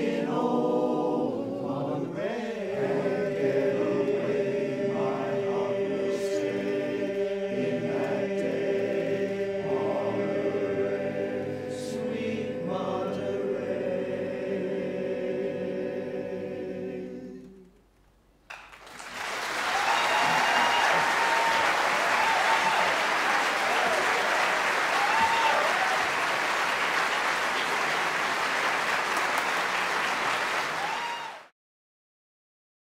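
Male barbershop chorus singing a cappella in close four-part harmony, ending on a long held chord that fades out a little past halfway. After a brief silence, the audience applauds steadily.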